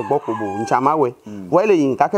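A woman speaking in a drawn-out, sing-song voice, with a thin steady held tone behind her about a third of the way in.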